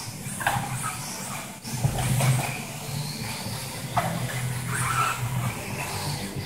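Electric brushless motor of a Tekno ET410 1/8-scale RC truggy whining, its pitch rising and falling several times as it accelerates and brakes through the corners. There are a few sharp knocks along the way and a steady low hum under it all.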